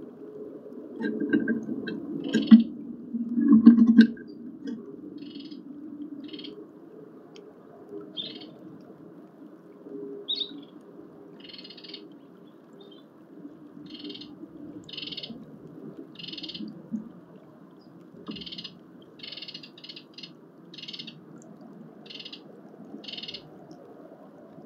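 Wild birds calling around a garden feeder: low calls loudest in the first few seconds, then a short high call repeating roughly once a second.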